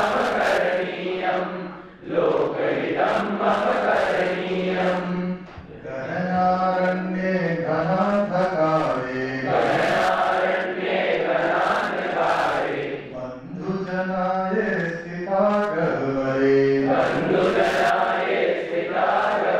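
A man chanting a verse in a sung recitation, holding notes at length, with short breaks between phrases about two and five and a half seconds in.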